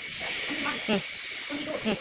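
Children talking indistinctly in the background over a steady hiss.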